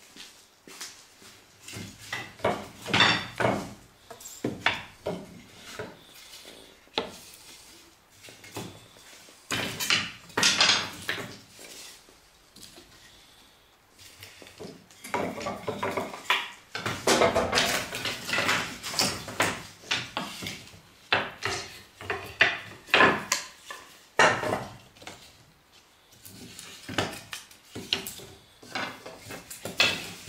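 Juniper slabs and boards being handled and laid down on a wooden bench: irregular knocking and clattering of wood on wood, in clusters with short quiet gaps, busiest in the second half.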